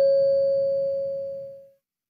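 A single bell-like chime, struck just before and ringing on one clear tone that fades away about one and a half seconds in. It is the cue between the end of a listening-test dialogue and the repeat of the question.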